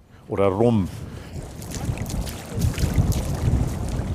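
Bare feet wading through shallow water over mud, with steady splashing and wind buffeting the microphone from about halfway through.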